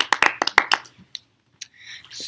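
Hand clapping: a quick run of claps, about seven a second, that stops about a second in.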